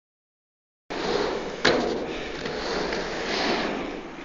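Inline skate wheels rolling on a skatepark halfpipe, a steady rolling rumble with one sharp knock about a second and a half in. The sound starts only after about a second of silence.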